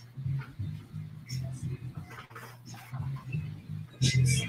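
Faint guitar playing, coming through thin and weak on the stream audio; the host is not getting the guitar properly.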